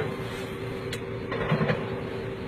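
A vehicle running, with a steady single-pitched hum over a low rumble and one sharp click about a second in.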